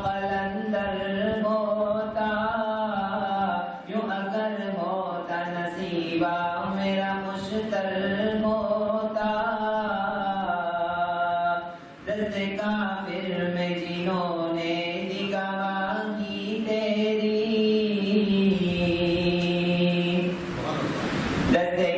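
A man's solo voice chanting a melodic religious recitation, with long held notes bending slowly in pitch. It breaks briefly for breath about 4 and 12 seconds in.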